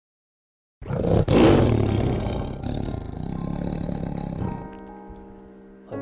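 After a moment of silence, a loud rumbling intro sound effect starts about a second in and slowly fades, giving way near the end to a held musical chord.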